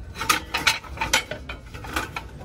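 Small plates clicking and knocking against each other as a hand sorts through a stack on a store shelf: a quick, uneven run of light clacks.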